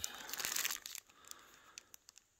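A small clear plastic bag of Sturmey Archer hub pawl pins crinkling as it is handled. The crinkling is busiest in the first second, then dies down to a few faint ticks.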